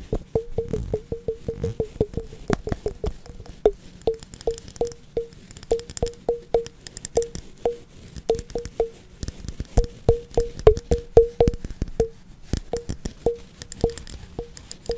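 Fast, uneven tapping on a hollow, resonant object, several taps a second, each tap ringing briefly on the same low note. Fainter crisp, scratchy sounds are layered over the taps.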